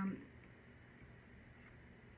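A woman's hesitant "um" trailing off at the start, then a pause holding only quiet room tone, with one faint click near the end.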